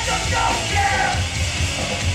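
Hardcore punk band playing live: distorted electric guitars, bass and drums, with shouted vocals over them.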